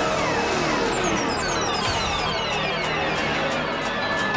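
Live electronic dance music: a synthesizer sweep of many tones gliding downward together over a loud, noisy wash, with regular short ticks in the highs.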